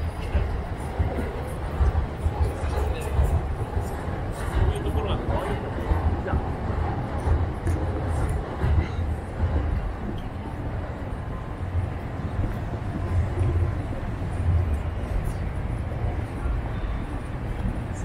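City street ambience: indistinct voices of passers-by and traffic over a heavy, uneven low rumble.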